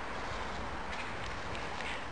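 Steady, even background hiss with no distinct event.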